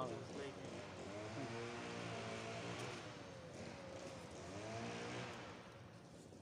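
Faint human voices talking in the background, in two stretches, over a steady low hum.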